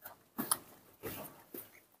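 Baby monkey feeding from a milk bottle: about four short, faint sucking and smacking noises at the teat.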